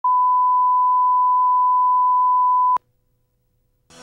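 Broadcast colour-bar line-up tone: a steady single-pitch 1 kHz reference tone that stops with a click about two and three-quarter seconds in. About a second of near silence follows.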